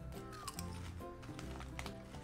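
Quiet background music with a low bass line that steps from note to note, with a couple of faint crunches of potato chips being bitten.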